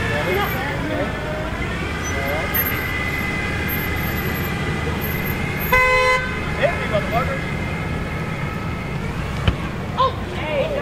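A car horn honks once, briefly, about six seconds in, over the low rumble of traffic moving slowly through an intersection and the voices of a crowd.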